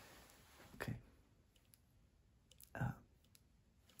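A few faint, soft clicks scattered through the middle of a quiet stretch, between two short spoken words.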